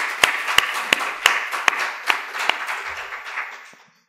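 Audience applauding, with single sharp claps standing out from the general clapping. It dies away in the last second.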